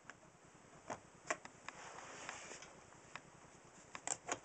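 Faint, scattered small plastic clicks and knocks of mains connectors being handled and pushed into place: a blue industrial coupler and a square-pin plug. A soft rustle runs through the middle.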